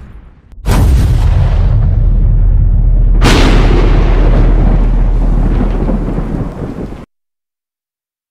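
Thunder sound effect: a sudden loud thunderclap followed by a second sharp crack a few seconds later, with rolling rumble that cuts off abruptly about seven seconds in.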